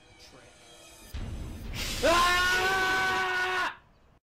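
A low rumble swells in about a second in, then a loud, held scream at one steady pitch starts about two seconds in and cuts off suddenly shortly before the end.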